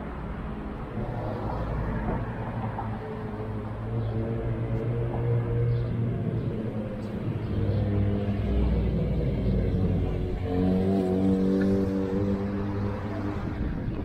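Road traffic passing close by: car engines and tyres with a steady low rumble that grows louder in the second half.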